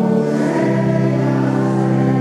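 Church choir singing with Balbiani Vegezzi Bossi pipe organ accompaniment: sustained chords that move to a new chord about half a second in.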